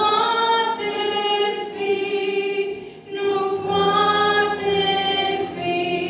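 A woman singing a Christian song solo into a microphone with piano accompaniment, holding long notes, with a brief pause for breath about three seconds in.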